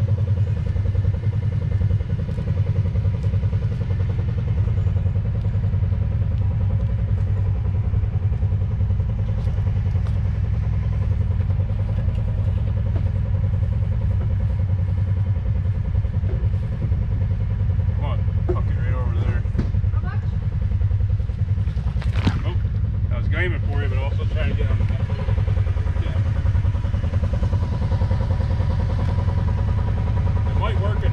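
Kawasaki Teryx side-by-side's V-twin engine idling steadily, with faint voices in the middle and near the end.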